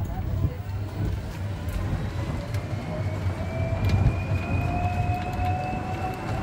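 Golf buggy on the move: a steady low rumble, with a motor whine that rises slowly in pitch from about two seconds in as the buggy picks up speed.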